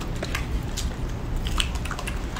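Strawberries being bitten and chewed, a run of irregular small clicks and smacks over a low steady hum.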